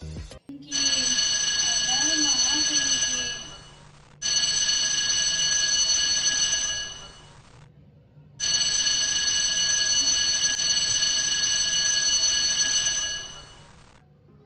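Mobile phone electronic alert tone sounding three times, each a steady ring of several tones held for about three to five seconds and then fading out.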